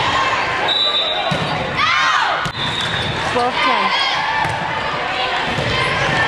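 Volleyball rally in a gymnasium: sneakers squeak in short chirps on the hardwood floor and the ball is struck with thumps, over voices of players and spectators echoing in the hall.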